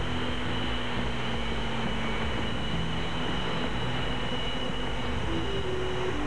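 F-22 Raptor's jet engines running on the ground as the fighter is marshalled to taxi: a steady rushing noise with a high whine held throughout.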